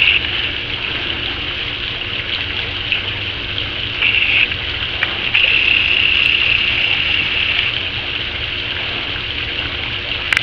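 Pool fountain jet spraying water up and splashing back into the swimming pool: a steady rush of falling water drops.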